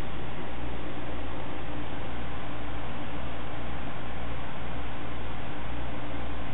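Steady, even hiss of a desktop PC's air-cooling fans running under full load during a Prime95 stress test, with a low rumble underneath.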